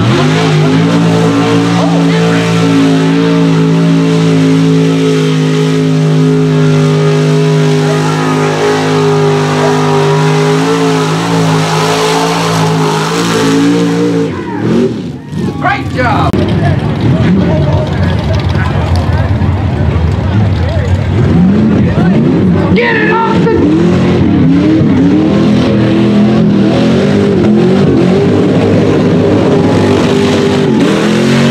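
Mud bog truck engines at high revs, with tyres churning through mud. For about the first fourteen seconds one engine holds a steady high-rpm note. After a short break the engines rev up and down over and over.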